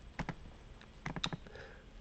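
Computer keyboard keys clicking faintly: two quick clicks a moment in, then a quick run of about six about a second in.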